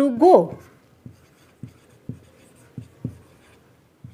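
Whiteboard marker writing words on a whiteboard: a series of short strokes, about one every half second.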